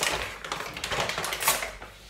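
Large plastic pouch crinkling and rustling as it is pulled out and handled, a dense crackle that fades just before the end.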